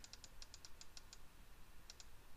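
Faint, rapid computer mouse clicks, about five or six a second.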